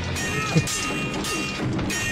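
TV drama soundtrack from a sword-fight scene: music under several clashes of steel swords, each leaving a short ringing tone.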